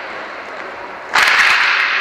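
A hockey puck struck hard about a second in: a sharp crack followed by a loud rattling echo that fades slowly through the reverberant dome.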